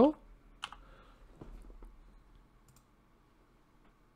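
A single sharp computer click about half a second in, followed by a few faint ticks over quiet room tone.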